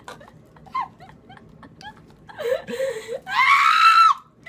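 A person's scream of disgust at a foul-tasting jelly bean. The first two seconds hold only faint mouth and voice sounds. About two seconds in, a drawn-out vocal sound breaks into a loud, high-pitched scream rising in pitch near the end.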